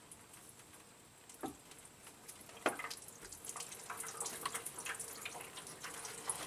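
Engine coolant trickling and dripping into a drain pan as the timing cover and water pump come loose from the engine. A couple of light metal clicks come early, and the dribbling grows busier over the last few seconds.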